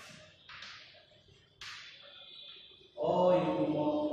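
Chalk scratching across a chalkboard in short writing strokes, one about half a second in and another about a second and a half in. A man's drawn-out voice comes in about three seconds in.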